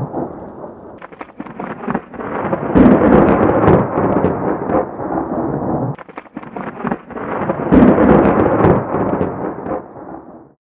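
Thunderstorm sound effect: two loud rolls of thunder, the first about three seconds in and the second about five seconds later, each opening with sharp cracks and rumbling away.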